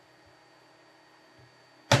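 Near silence: faint room tone, with a man's voice starting up near the end.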